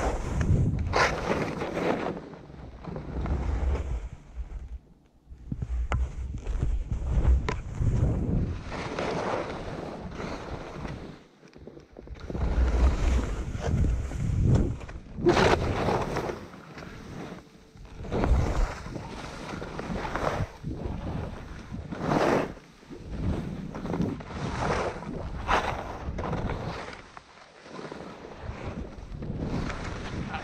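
Skis scraping and hissing over chopped-up snow through a series of turns, each turn a swell of scraping every one to three seconds. Wind buffets the microphone with a low rumble in places.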